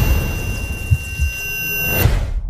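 Film trailer sound design: a low, dense rumble with several thin, steady high-pitched tones held over it, with no melody.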